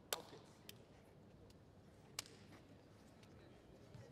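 Near-silent hall room tone broken by a few short, sharp clicks: one right at the start, a faint one shortly after, and another about two seconds in.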